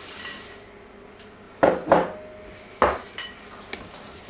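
Dark chocolate chips poured from a glass bowl into a glass mixing bowl, rattling briefly at the start. Then three sharp knocks on the glass mixing bowl, one leaving a short ring, as the cookie dough is worked with a wooden spoon.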